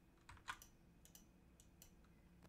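Faint, scattered clicks of a computer keyboard, about six over two seconds, against near silence.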